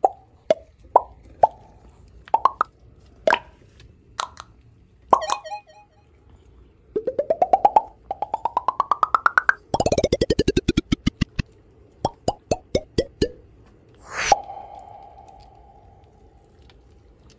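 Cartoon-style sound effects added in editing: a string of short popping plops, then a fast run of blips climbing in pitch and another falling back down, more plops, and a last upward swoop about fourteen seconds in that fades away.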